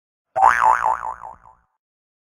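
Cartoon 'boing' sound effect: a springy tone starting about a third of a second in, its pitch wobbling up and down about five times a second as it fades out within about a second.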